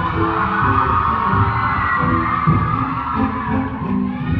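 Live amplified band music, with drums and bass keeping a steady beat. A high wash of crowd cheering and screaming swells over it and fades near the end.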